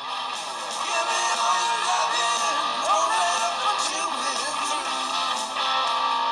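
Rock music with electric guitar playing through the Motorola One Action smartphone's single bottom-mounted loudspeaker, thin with almost no bass.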